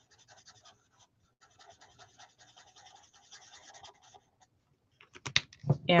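Stampin' Blends alcohol marker nib scratching on paper in quick, short colouring strokes, faint and rapid, stopping about four seconds in. A few sharp clicks follow near the end.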